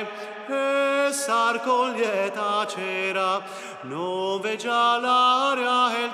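Slow, chant-like solo singing: long held notes that waver and step from pitch to pitch, with a scooping rise about four seconds in.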